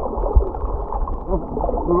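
Muffled underwater sound of a shallow rock pool, picked up by a submerged action camera: a dull, low churning water noise with a soft knock about half a second in. Muffled voices from above the surface come through faintly.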